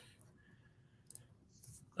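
Near silence with one short, sharp click about a second in, and a faint brief noise just before the end.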